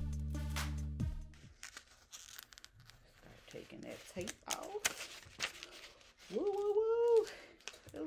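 Background music with a beat stops about a second and a half in. It is followed by paper crinkling and tearing as sublimation transfer paper and tape are peeled off a freshly pressed stole. A short voice sound, rising and falling, comes near the end.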